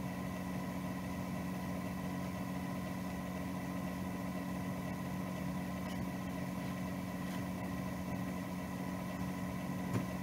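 A steady machine hum holding a few constant tones, unchanging in level.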